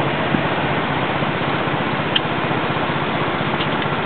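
Steady hiss of static from an HF amateur radio transceiver on an open voice channel, heard between transmissions, with a faint click or two.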